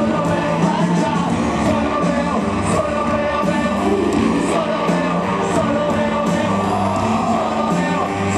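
Live rock band playing, with a lead singer's vocal over electric guitar, bass, keyboards and drums with regular cymbal hits.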